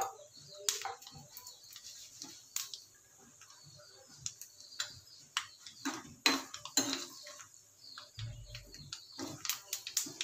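Steel spoon clinking and scraping against a small steel pan while stirring dried red chillies frying in oil. The sound comes as scattered sharp ticks, with a few louder knocks about six to seven seconds in.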